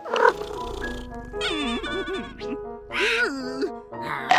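Cartoon background music, with two wavering, wobbling vocal noises from a cartoon character over it, about a second apart in the middle; a short noisy burst comes right at the start.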